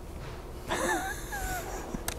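A man's soft, breathy chuckle with a wavering pitch, starting under a second in and lasting about a second.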